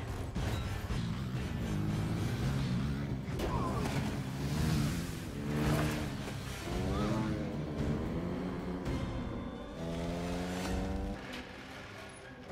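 Film soundtrack mix: dramatic music score over heavy rain, with a deep rumble underneath that drops away near the end.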